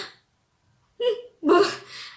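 A woman's voice: a brief pause, then two short vocal bursts about a second in, a quick catch of breath and a short laugh-like sound.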